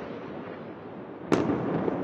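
A single sharp blast about a second and a half in, its echo trailing off slowly over steady background noise.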